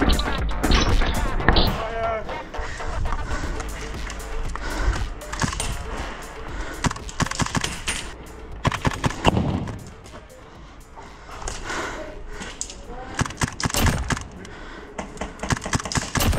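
Electronic background music over airsoft gunfire: many sharp, irregularly spaced shots.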